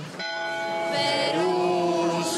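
Greek Orthodox chant, voices holding long sustained notes, with the melody stepping up in pitch about halfway through.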